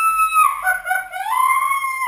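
A woman shrieking with excitement at the news of a girl: one long, high held shriek that breaks off about half a second in, followed by more squeals that rise and fall in pitch.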